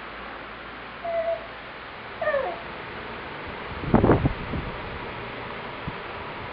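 A toddler's short, high-pitched wordless vocal sounds: a brief squeak about a second in, a falling cry about two seconds in, then a louder rough burst around four seconds in.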